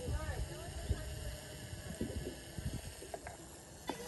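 Faint, distant voices over an irregular low rumble.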